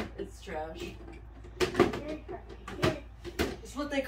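An empty plastic storage drawer knocking against the floor, several short hollow knocks over a few seconds, with brief wordless voice sounds.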